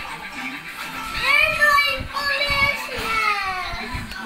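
A young child's voice singing or chanting without clear words in high, gliding notes, starting about a second in.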